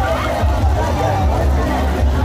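Carnival street-party music with heavy pulsing bass, mixed with the shouting and chatter of a large crowd.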